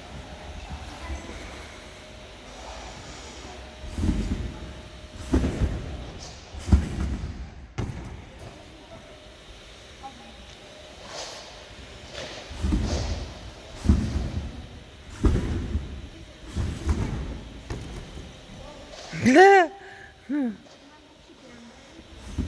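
A gymnast bouncing on a trampoline: two series of heavy thuds, each about a second and a half apart, three in the first run and four in the second. Near the end a short high-pitched cry is the loudest sound.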